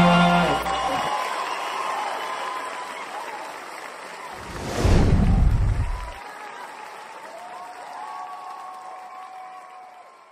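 Audience applauding as the song's last held chord stops within the first second, the clapping then fading away. About five seconds in comes a loud whoosh that sweeps down into a low rumble.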